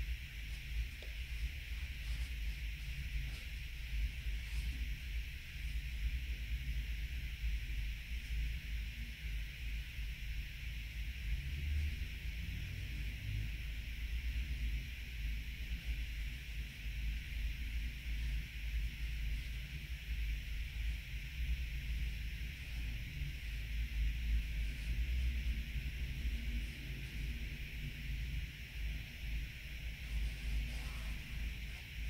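Steady background hiss with a low, uneven rumble underneath; no distinct events stand out.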